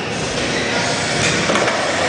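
Skateboard wheels rolling down a wooden ramp and onto the flat floor, a steady rolling noise with one sharp knock about one and a half seconds in.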